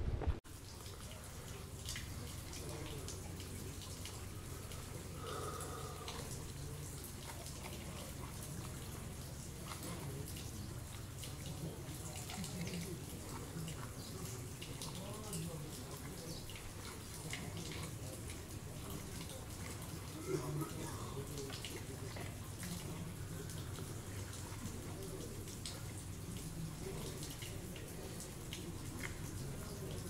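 Water running from the spouts of a stone wall fountain into its basin: a steady soft trickle with small drips and splashes throughout.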